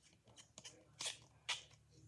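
A plastic toy baby bottle handled in the fingers while its cap is fitted: faint rustling and small plastic clicks, with two sharper clicks about a second and a second and a half in.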